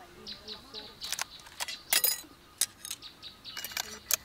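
Sharp metallic clicks and clacks of a Kalashnikov-pattern rifle being handled and field-stripped for cleaning, bunched in two groups around the middle and near the end. Birds chirp in short calls throughout.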